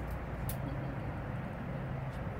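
Steady cabin drone of a Boeing 747-400 in flight: a constant low hum under a wash of airflow and engine noise. Two brief high clicks sound in the first half-second.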